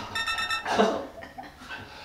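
A ringing electronic tone, like an alarm bell, lasting about half a second, followed by a man's short chuckle.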